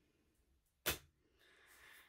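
A single short, sharp tap or click against a quiet room, followed by a faint soft rustle.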